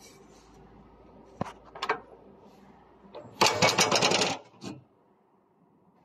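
Two sharp clicks, then about a second of fast metallic rattling clatter and a last click, from something being handled on the roller mill.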